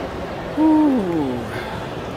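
A person's voice calling out one loud, long note that falls in pitch, a "whooo"-like hoot lasting just under a second, over the murmur of a crowd.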